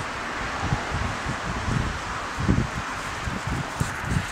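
Wind blowing across the microphone: a steady rush with irregular low rumbling buffets.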